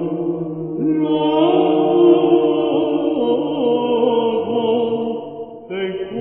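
Byzantine chant: a cantor sings a long melismatic phrase in plagal first mode over a steady low drone (the ison). The singing breaks off briefly near the end and then resumes.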